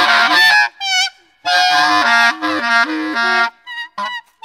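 Free-jazz duo playing: an alto saxophone honking and squealing high with a wide, wavering vibrato over a repeated low two-note figure. It breaks off under a second in, starts again about a second and a half in, and stops shortly before the end.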